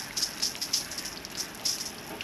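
Water spray from a garden hose's pistol nozzle spattering on the body panels and windows of a Land Rover Discovery, an uneven hiss with irregular splashy bursts. The car is being water-tested for leaks.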